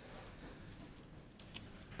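Quiet pause in the speech: faint room hiss, with a couple of soft clicks about a second and a half in.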